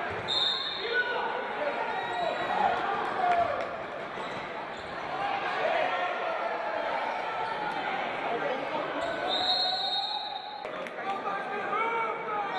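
Live indoor handball play in a hall: the ball bouncing on the wooden court and players' shouts echoing. A referee's whistle blows briefly just after the start and again for about a second near the end.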